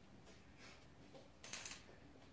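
Near silence, with a brief rustle of a paper greeting card and envelope being handled about one and a half seconds in.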